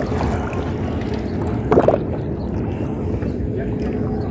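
Steady low rumble of wind and shallow sea water, with one brief voice sound about two seconds in.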